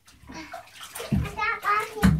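Water splashing in a bathtub as a young child plays and talks in it, the child's voice coming in about halfway through.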